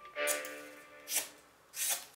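Sharpened knife blade slicing through paper in three quick swishing cuts, one near the start, one about a second in and one near the end, over background music.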